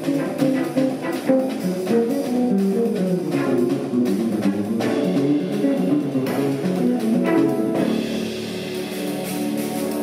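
Jazz trio playing live: Nord Electro stage keyboard with bass and drums in a busy, rhythmic passage. About eight seconds in, the playing settles into held, sustained chords.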